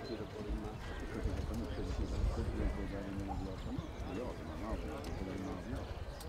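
Indistinct voices of people talking, with the dull hoofbeats of a horse trotting on a sand arena underneath.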